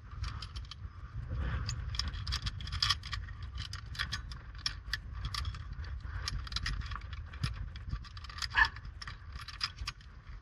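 Metal carabiners and quickdraws clinking and jangling against the steel hangers and rings of a two-bolt climbing anchor as they are handled, in many irregular light clicks with one louder clink late on, over a low rumble.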